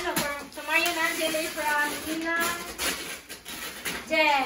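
High-pitched voices talking indistinctly, with no clear words.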